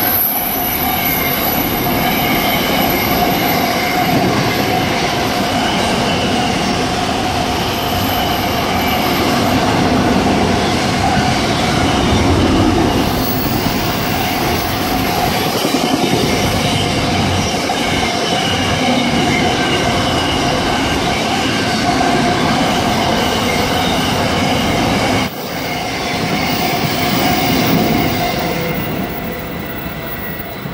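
Long container freight train rolling past at speed: a continuous wheel-on-rail rumble with steady high ringing tones from the wagons' wheels. The noise drops suddenly about 25 seconds in and fades as the last wagons pass.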